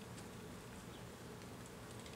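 Faint, steady buzzing of flying insects, with a few faint high ticks.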